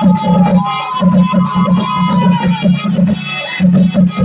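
Sambalpuri folk music played live: barrel and large round drums beaten in a fast, steady, driving beat. Over the first half a long high note is held, stepping up once before it fades.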